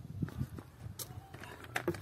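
Footsteps on bare soil, with scattered light knocks and rustles over a low steady rumble.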